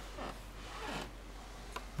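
Handling noise: two short rasping rubs from hands fumbling with Lego plastic parts close to the microphone while the dagger piece is worked into the light-up brick's slot, with a faint click near the end.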